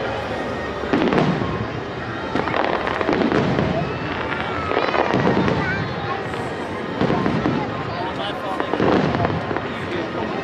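Aerial fireworks shells bursting, a loud boom about every two seconds, five in all, over a continuous mix of voices and music.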